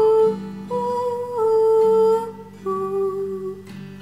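A woman humming a slow, wordless melody of long held notes, changing pitch about once a second, over a plucked nylon-string classical guitar.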